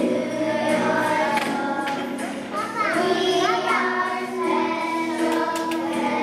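A group of young children singing a song together, with a couple of swooping voices in the middle.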